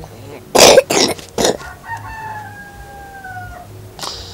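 A person coughs three times in quick succession, then a rooster crows once in the background: one long call that falls slightly in pitch.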